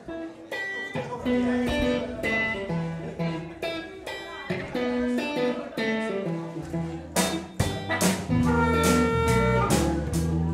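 Blues band playing live: an electric guitar picks a blues line, and drums join in at about seven seconds, after which the music is louder.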